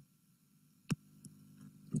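Near silence in a pause of speech, broken by a single sharp click about a second in, followed by a faint steady hum.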